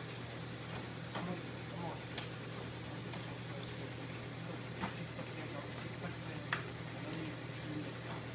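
Steady low hum of a plate-cleaning machine running, its one-horsepower motor turning a rotating brush, with a few light clicks and taps as an aluminium lithographic plate is set onto the machine's metal skis.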